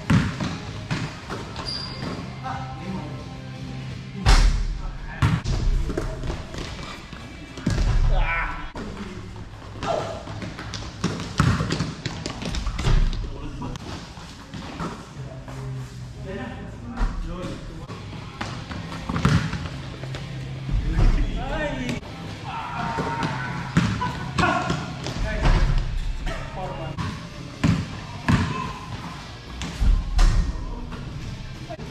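Basketball being dribbled and bouncing on a hard indoor court floor: irregular thuds through a pickup game, with players' voices between them.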